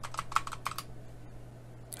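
Computer keyboard typing: a quick run of about seven keystrokes in the first second as a short word is typed, then quiet except for one more click near the end.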